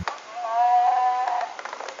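Star Wars Chewbacca bobblehead toy playing its electronic Wookiee roar through a small speaker: one call of about a second, starting a moment in, which shows the toy's sound works. A few faint clicks follow near the end.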